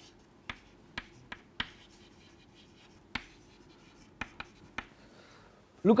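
Chalk on a blackboard as words are written: a scattering of short, sharp taps and light scrapes at uneven intervals.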